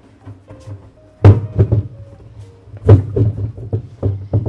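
A tall planter vase being rocked and walked across a stone-tiled floor, its base knocking down on the tile: two heavy thunks about a second and a half apart, each followed by a few lighter knocks.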